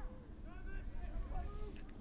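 Lacrosse players' voices calling out on the field, faint and brief, over a steady low rumble of field ambience.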